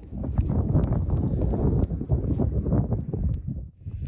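Wind buffeting a handheld phone's microphone, an uneven low rumble with a few faint clicks, dropping away shortly before the end.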